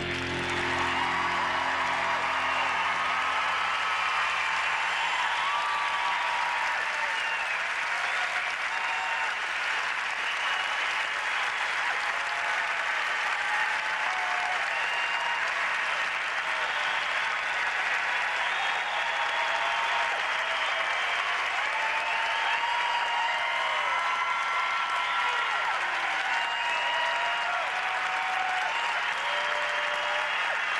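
Arena audience applauding steadily after a figure-skating show's finale, with scattered cheers on top. The last notes of the music fade out in the first few seconds.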